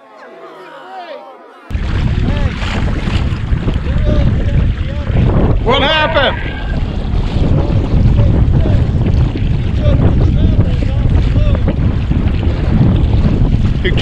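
Wind buffeting the microphone of a camera on a kayak on open water: a loud, steady low rumble that starts abruptly about two seconds in. A voice calls out once about six seconds in.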